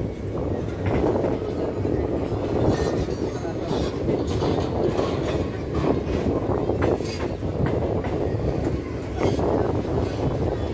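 Passenger train coach running along the track, heard from its open doorway: a steady rumble of wheels on rail with irregular clicks and knocks as the wheels cross rail joints.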